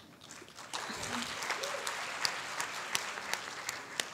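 Audience applauding, a dense patter of many hands that starts about a second in, holds steady, and begins to fade near the end.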